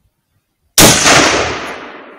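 A single hunting-rifle shot, sudden and loud, about a second in. Its report rolls away and fades over the following second and more.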